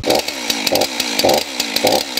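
Stihl chainsaw running, its engine pitch surging up and down about twice a second.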